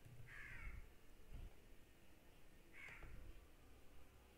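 Near silence, with a bird calling twice: two short calls, about half a second in and about three seconds in. A few faint clicks also come through.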